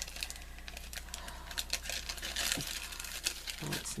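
A clear plastic bag crinkling and rustling as it is handled, with many small irregular crackles.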